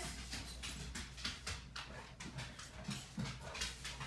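A dog whimpering faintly among a series of light taps and clicks; she is fretting to be let outside.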